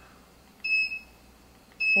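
Two short, high electronic beeps about a second apart from an IntelliQuilter quilting computer, each one signalling a point marked with its remote.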